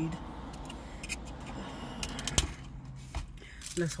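Paper wrapper being stripped off a drinking straw: light rustling with a few sharp clicks and snaps, the sharpest a little over two seconds in.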